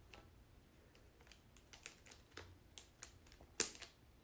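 Rigid plastic cage parts clicking as the door is bent back and its interlocking tabs snap into the front wall panel: a run of light, irregular clicks, the loudest one near the end.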